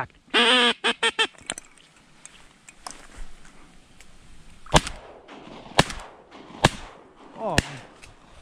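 Four shotgun shots from two waterfowl hunters firing at incoming ducks, about a second apart in the second half. A few honking calls sound in the first second or so.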